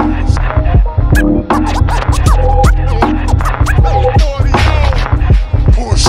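Hip hop beat with heavy bass and drums, with turntable scratching cut in over it.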